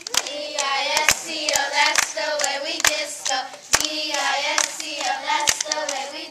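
A group of young girls singing together, with sharp hand claps landing every half second or so.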